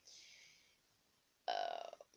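A soft breathy hiss, then about a second and a half in a short, low burp from a person.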